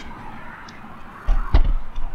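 A brief dull thump with a sharp knock about a second and a half in, after a quiet stretch.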